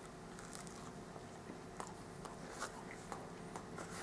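Faint chewing of a breaded, fried macaroni cheese bite, with a few soft clicks scattered through.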